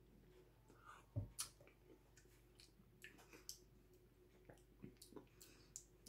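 Faint lip smacks and mouth clicks of someone tasting salad dressing off a spoon, with a soft knock and a sharper click about a second in.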